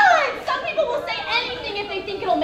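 Several young voices talking and calling out over one another, with one loud high voice at the start.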